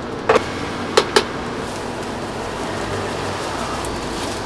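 Three sharp knocks in the first second or so, then a steady splashing rush as white liquid is poured from a plastic jug into a large aluminium pot.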